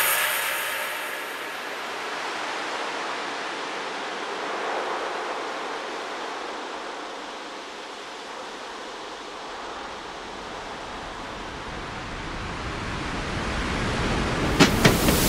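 Breakdown in an electronic phonk/trap beat: the drums and bass fade out and leave an even wash of noise like surf or filtered white noise, with almost no bass. It dips a little in the middle and swells back up toward the end.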